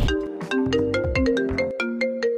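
An iPhone ringtone playing for an incoming call: a quick melodic run of short, bright pitched notes, about six or seven a second.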